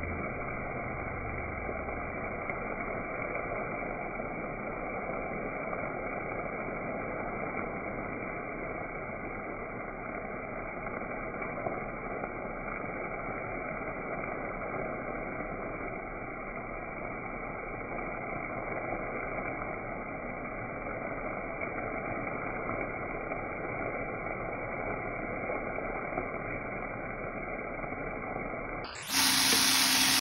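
Green beans sizzling steadily in a hot frying pan as they are stir-fried. About a second before the end the sound jumps abruptly to a louder, fuller noise.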